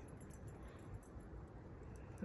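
Faint, steady outdoor background with a low wind rumble on the phone's microphone.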